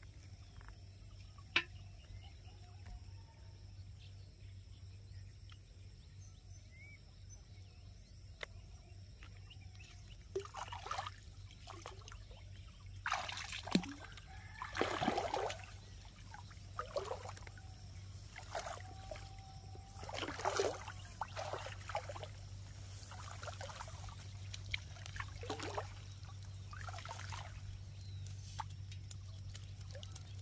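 Shallow floodwater splashing and dripping as a mesh fish trap is handled and lifted out of the water. Quiet at first with a single click, then irregular splashes from about ten seconds in.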